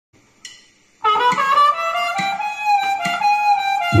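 Diatonic harmonica in C playing the opening phrase of a slow, mournful jazz melody alone, a few notes settling into a long held note. A low backing chord comes in right at the end.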